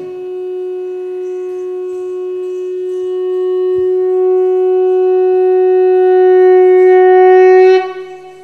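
A wind instrument holds one long, steady note that grows louder over several seconds, then cuts off sharply near the end.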